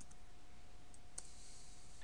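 A few faint computer-keyboard clicks, the sharpest about a second in, over a faint steady hum.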